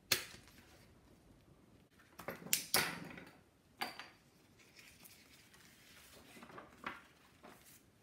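A sharp click as a handheld plier hole punch bites through a stack of paper, followed a couple of seconds later by several clacks of the metal punch being put down on a wooden table, and a few softer paper-handling clicks.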